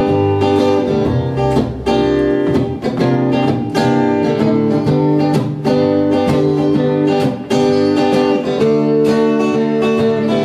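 Guitars playing the song's instrumental introduction, with an acoustic guitar strumming a steady rhythm.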